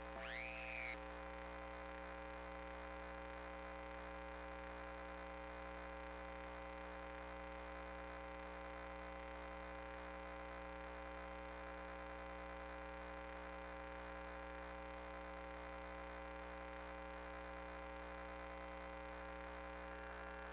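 Faint, steady electrical hum made of many fixed tones, with one short whistle-like sweep that rises and falls in pitch in the first second.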